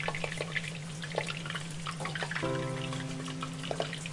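Water at a rolling boil in a pot with mushrooms blanching in it: many small irregular bubbling pops. Soft background music plays under it, with a held chord coming in about halfway through.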